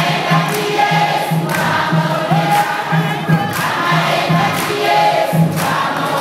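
A congregation singing a praise song together, many voices at once, over a steady low beat about twice a second.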